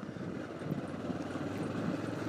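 A vehicle's engine running steadily while driving along a wet road, a low hum under tyre and wind noise.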